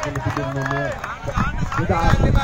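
A man's voice calling out with one long drawn-out call in the first second, then a few shorter calls near the end.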